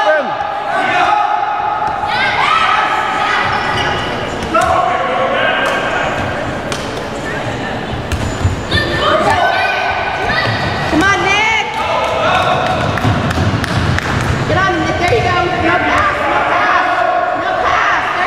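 Basketball being dribbled on a hardwood gym floor during a youth game, with repeated sharp bounces and sneakers squeaking as players run and cut.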